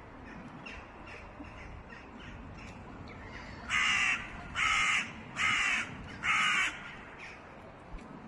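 A crow cawing four times in a row, loud, harsh calls about half a second each. Fainter, shorter bird calls come before and after, over a faint steady background hiss.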